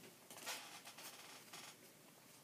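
A deck of paper playing cards being handled and flicked through by hand: a few faint, papery rustles and flicks over about a second and a half.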